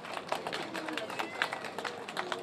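Scattered, irregular hand claps from a small audience, with murmured voices underneath.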